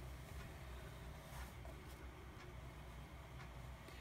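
Faint scratching of a bone folder drawn down a scoring board's groove, scoring a sheet of cardstock, with a few light ticks over a low, steady hum.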